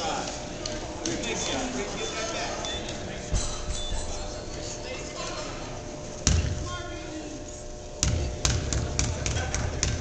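A basketball bouncing on a hardwood gym floor, a few sharp thuds in the second half, as a free-throw shooter dribbles before the shot, over steady crowd chatter in a large gym.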